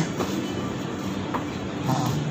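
Steady low droning hum over background noise, with two faint short clicks in the second half.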